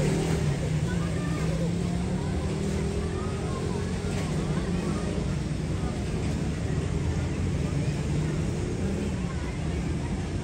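Diesel locomotive engine running with a steady low drone as it approaches, with voices and some higher chirps over it.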